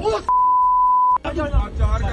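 A steady, loud 1 kHz censor bleep lasting about a second, cutting in and out sharply over a man's speech to mask an obscenity.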